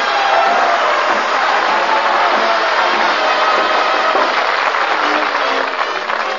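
Studio audience applauding, with music playing underneath.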